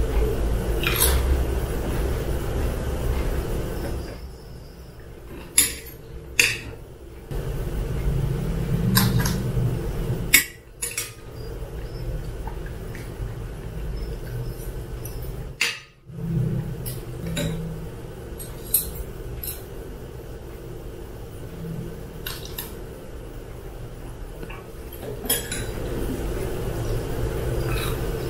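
Close-miked eating of jjajangmyeon: metal chopsticks and a spoon clinking sharply against a ceramic bowl several times, spread through, with softer chewing and slurping of noodles between the clinks.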